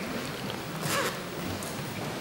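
A brief rasping noise about a second in, over the low background noise of a large room.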